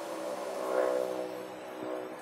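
A steady drone of several held tones, with a slight swell just before one second in.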